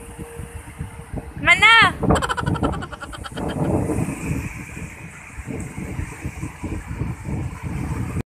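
Surf washing up a sandy beach, with wind rumbling on the microphone. About one and a half seconds in, a person gives one loud, high call that rises and falls, followed by a short run of pulsed voice sounds.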